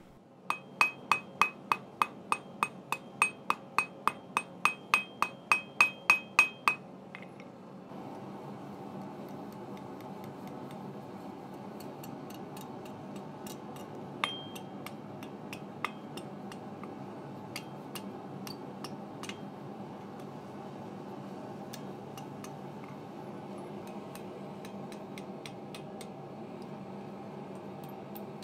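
Hand hammer striking hot mild steel on a small 30 kg Acciaio anvil: a quick run of about twenty ringing blows, roughly three a second, drawing down a thin leaf stem, which stops about seven seconds in. After that a steady background sound continues, with a few scattered light taps.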